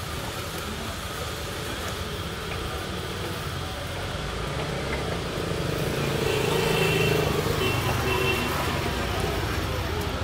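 Steady road traffic noise, swelling as a vehicle passes about two-thirds of the way through.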